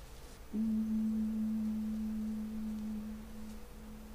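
A single pure tone, about the A below middle C, sounded once to give the choir its starting pitch: it starts suddenly about half a second in, holds steady, then fades away near the end.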